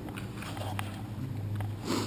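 A steady low hum with a few faint clicks, and a short breath drawn in near the end.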